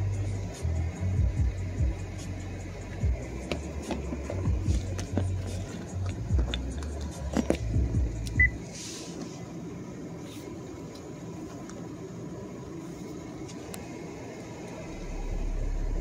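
Light taps on a phone screen over low, choppy music-like sound for the first eight seconds or so. Near the end, a steady, very low 35 Hz test tone starts, faint enough that it is hard to hear.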